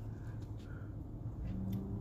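Low steady hum of a car idling, heard from inside the cabin; a faint low tone joins in near the end.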